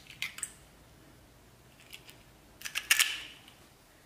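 A hen's egg being cracked and its shell pulled apart over a stainless steel bowl: a few short cracks and clicks just after the start, then a louder cluster of sharp clicks about three seconds in.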